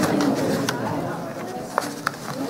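Indistinct voices talking off-microphone in a room, too unclear to make out words, with a couple of short clicks.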